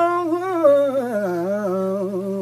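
A man singing unaccompanied, holding a long drawn-out vowel that slides down to a lower note a little past halfway and holds there.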